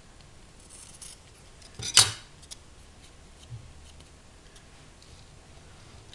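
Scissors trimming a loose piece off the edge of a small craft tile: one sharp snip about two seconds in, with a few faint clicks and rustles around it.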